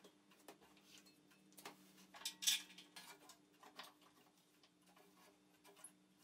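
Scattered light metallic clicks and knocks as the homemade belt grinder's frame is tilted and its table and clamps are handled, with the loudest clunk about two and a half seconds in.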